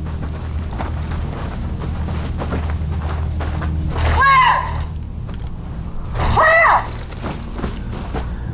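A low steady rumble under the action, broken by two short, loud, high-pitched cries: one about four seconds in and another about two seconds later.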